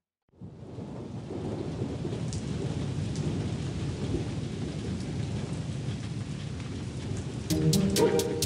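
Rain sound effect: steady falling rain with a low rumble under it. It starts after a moment of silence, and music comes in near the end.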